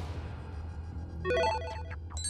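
A short electronic sound-effect jingle: a quick run of stepped, ringtone-like notes about a second and a half in, over a steady low background-music drone.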